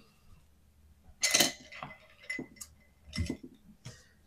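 Colored pencils clinking and knocking together as one pencil is put down and another picked up: a sharp clink a little over a second in, then several lighter knocks.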